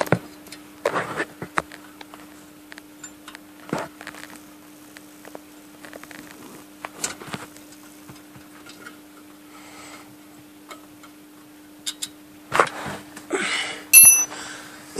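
Scattered light clicks and knocks of an Allen wrench and hands working loose the bolt of a wheel-hub ABS sensor, with a louder rustle near the end, over a faint steady hum.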